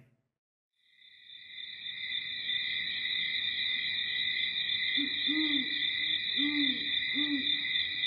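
Night-time ambience sound effect: after a moment of silence a steady high-pitched drone fades in, and from about five seconds in an owl hoots three or four times.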